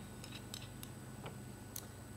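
A few faint, sharp clicks and ticks from a wine bottle and wine glass being handled, over a low steady hum.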